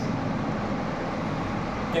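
Steady background noise: an even low rumble and hiss with no distinct events.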